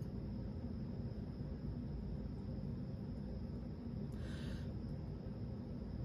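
Quiet room tone: a steady low hum with a faint thin high tone, and one soft brief noise about four seconds in.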